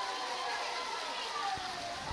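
Faint outdoor football-pitch ambience: distant players' voices over a steady background haze with a faint high hum.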